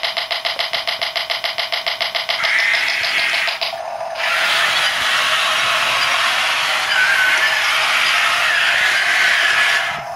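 Radio-controlled toy tanks driving on a laminate floor: a fast, even rattle of about six beats a second for the first three seconds or so, then a steady whirring whine from the small electric drive motors and gearboxes.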